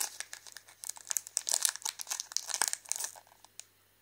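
Foil-lined plastic wrapper of a glazed curd snack bar crinkling and crackling as fingers peel it open: a dense run of crackles for about three seconds, then it stops.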